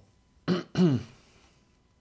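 A man clearing his throat: two short bursts about a third of a second apart, the second voiced and falling in pitch.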